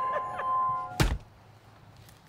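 Music with held notes cuts off abruptly, and a single heavy thunk hits about a second in. Faint low ambience follows.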